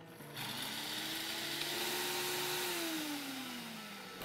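A 1000-watt Auto-iQ blender grinding whole black pepper, cinnamon, cumin, cloves and star anise into five-spice powder. The motor spins up just after the start, runs steadily with a gritty whirr, and winds down with a falling pitch over the last second or so.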